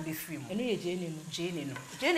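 A wooden spatula stirring in a cooking pot over a steady sizzle of frying, with a woman's voice talking over it.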